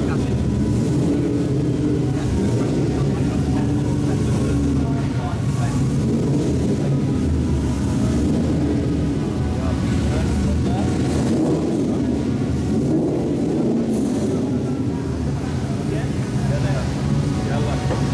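Racing car engines idling, a steady low rumble with no revving, under indistinct voices.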